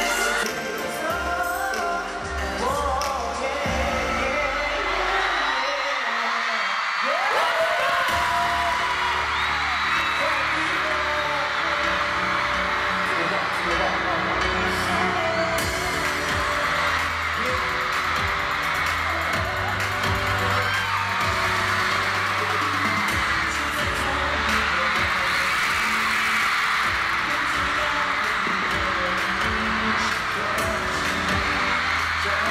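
Live K-pop concert music with the boy group singing into microphones, recorded from the audience, with fans' cheering mixed in.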